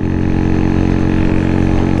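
Engine of a 2003 Baimo Renegade V125 custom 125cc cruiser motorcycle running at a steady speed while riding, its note holding level, with low wind rumble on the microphone.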